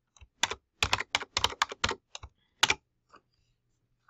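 Typing on a computer keyboard: about a dozen quick, uneven key clicks over the first three seconds.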